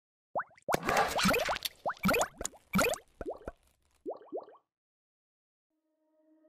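Logo-animation sound effects: a fast run of short, rising cartoon-style pops and bloops. The last few are softer and more spaced, and they stop about four and a half seconds in.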